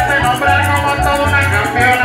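Live música llanera played through a PA: a man singing over a concert harp, with maracas shaking in a fast even rhythm and a pulsing deep bass line underneath.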